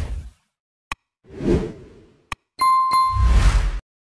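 Sound effects of an animated YouTube subscribe-button outro: a few sharp clicks, whooshes, and a bright ding about two and a half seconds in, all cutting off suddenly near the end.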